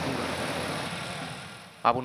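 Yanmar combine harvester running while grain streams out of its unloading auger spout, a steady rushing noise over the engine that fades away near the end.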